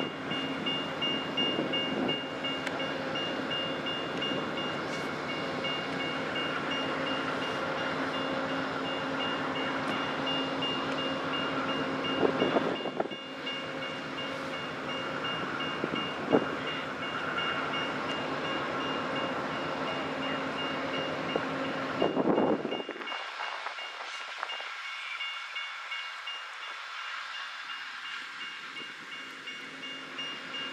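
Amtrak passenger train standing at a station, its diesel engines running with a steady low hum, while a grade-crossing bell rings continuously. There are a few sharp metallic knocks, and about two-thirds of the way through the low hum suddenly drops away, leaving mostly the crossing bell.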